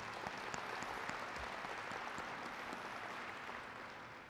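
Audience applauding, many hands clapping in a steady patter that fades off toward the end.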